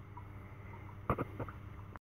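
Low steady background hum, with a quick pair of soft knocks a little over a second in and two fainter ones just after: handling noise as the carburettor bowl is shifted in the hands.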